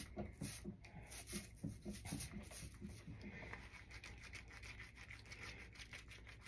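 Faint rubbing with small light taps: a hand-held ink roller being worked over the leaves of a cut artichoke to ink it for printing. The taps are busiest in the first few seconds.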